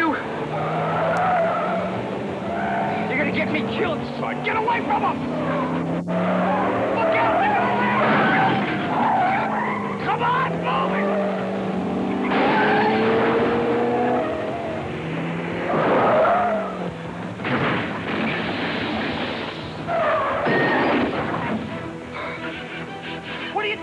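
Car engines revving up and down and tires squealing in a movie car chase between a taxi and a sedan, with louder bursts of skidding about halfway through and twice more near the end. The audio is dull, cut off at the top, as from an old VHS tape.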